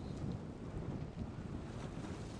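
Steady wind noise on the microphone over water rushing and splashing along the hull of an SB3 sailboat under sail in choppy water.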